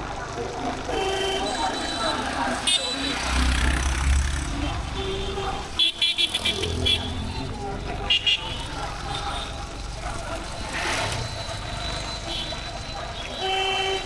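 Busy town street traffic heard from a moving motorcycle: vehicle horns beep repeatedly, with a quick run of short toots about six seconds in and a longer horn near the end, over the steady rumble of engines and road noise.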